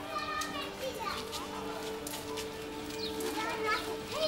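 Children's high voices calling and shouting in a street, over background music of long, held low notes.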